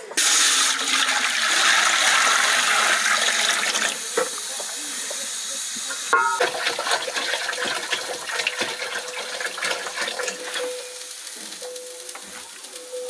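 Water poured from an aluminium bowl into a large aluminium pot, a splashing rush for about four seconds. About six seconds in, a metal dish clangs and rings briefly, followed by light clinks of pots and dishes.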